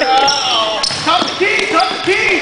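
Pickup basketball in a large gym: sneakers squeaking on the hardwood court in short high chirps and a basketball bouncing, mixed with players' voices calling out.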